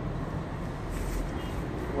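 Steady low rumble of room noise with a faint hum at the bottom of the range.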